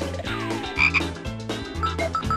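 Cartoon theme music with a steady bass beat, broken by a frog-croak sound effect: a falling slide, then two loud croaks just under a second in.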